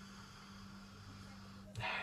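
Quiet room tone with a steady electrical hum and faint hiss, and a breath drawn near the end.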